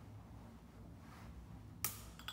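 A single sharp snap or click near the end, over a faint low hum.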